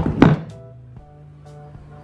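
A single sharp thump about a quarter of a second in. It is followed by a quiet, steady low hum from a freshly powered active speaker, with faint, broken tones over the hum.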